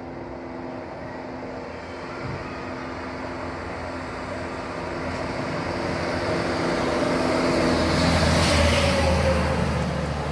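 City bus approaching and passing close by, engine and tyre noise building to a peak about eight to nine seconds in, the engine note dropping in pitch as it goes past.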